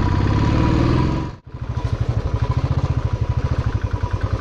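Motorcycle engine running under way on a rough road, its pitch rising a little in the first second. The sound cuts out abruptly about a second and a half in, then returns as a steady, fast pulsing engine beat.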